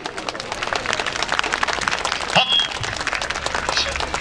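Audience applauding, a steady patter of many hands clapping, with a brief shout about two and a half seconds in.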